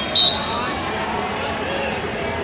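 A short, sharp referee's whistle blast just after the start, over a steady hubbub of voices in a large hall. It marks the end of the first period of a wrestling bout.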